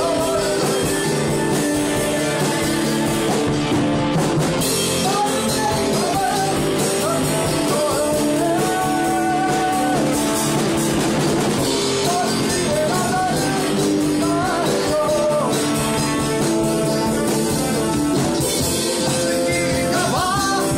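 A small rock band playing a song live in a room: electric guitars, drum kit and saxophone together, with a melody line bending over the chords throughout.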